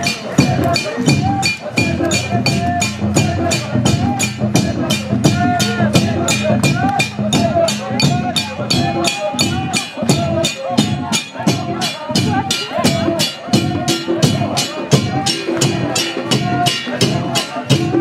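A congregation singing together in chorus to a steady beat of hand drums and percussion, about three strokes a second.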